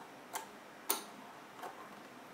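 Three sharp plastic clicks, the middle one loudest, as the mounting bracket is twisted around the pump head of an NZXT Kraken Z liquid CPU cooler.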